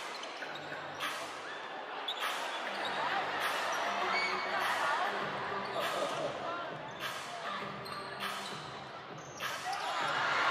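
Basketball being dribbled on a hardwood court, sharp bounces about once a second, over the steady chatter of a crowd.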